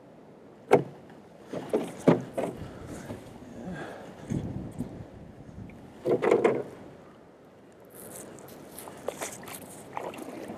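Knocks and thumps from a small metal jon boat's hull as it is handled and bumps along the bank, the sharpest about a second in. Near the end, dry branches crackle as a fallen tree limb is grabbed.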